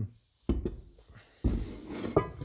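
Two dull, low thumps about a second apart, with rustling between: handling noise as things on a wooden workbench are moved.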